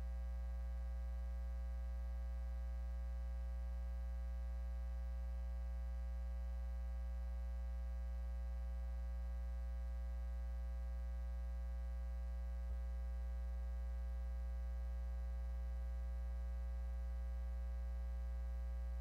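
Steady electrical mains hum with a buzz in the audio feed, with one faint click about two-thirds of the way in.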